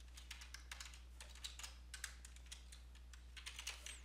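Faint computer keyboard typing: quick, irregular keystroke clicks as code is typed.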